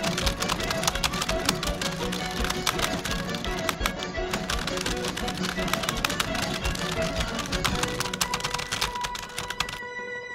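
Fast, continuous clicking of computer keyboards being typed on, under background music; the typing stops just before the end.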